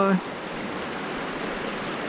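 A small, shallow creek running over rocks and riffles: a steady rush of flowing water.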